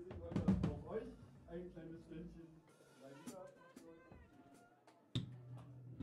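Band setting up on stage: a few drum hits near the start, voices talking, then about five seconds in a steady low bass note starts through a Hartke bass amp.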